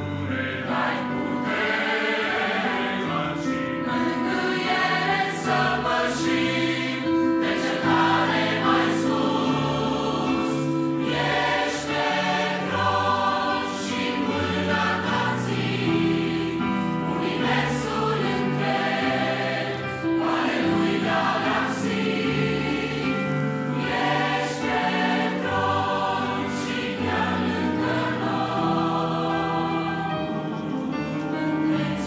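A mixed choir of mostly women's voices singing a Romanian Christian hymn, accompanied by an electronic keyboard, at a steady level.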